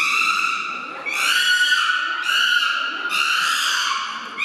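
Chimpanzee screams: about four long, high-pitched calls, one after another with short breaks between them.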